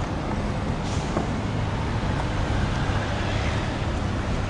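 Steady outdoor background rumble with a hiss over it. No distinct events stand out.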